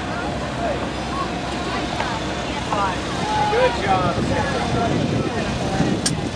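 Indistinct chatter of several people talking at a distance, over a steady low rumble.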